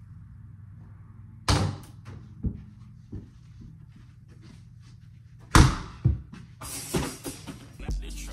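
A small rubber ball thudding: two loud hits about four seconds apart, each followed by a few smaller bounces, with a brief rustle near the end. Faint music runs underneath.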